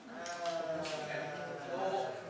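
A person's voice with a drawn-out, wavering pitch.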